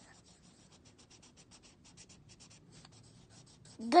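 Felt-tip marker scribbling on a paper worksheet as a word is coloured in: faint, quick back-and-forth scratchy strokes, several a second.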